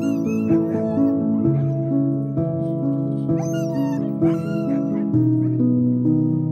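A chained sled dog whimpering and crying in short, high, wavering cries: in a cluster near the start, again a little after three seconds in, and around four seconds. They sound over background music of steady plucked notes.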